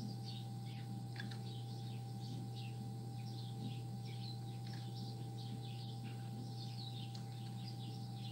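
Quiet room tone: a steady low electrical hum and a thin steady whistle, with faint, short high chirps scattered throughout.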